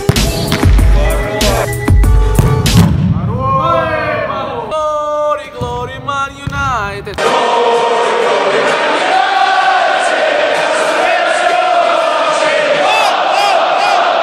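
Edited soundtrack: electronic music with a heavy bass beat, then a stretch of wavering, gliding tones, giving way about seven seconds in to a large stadium crowd chanting.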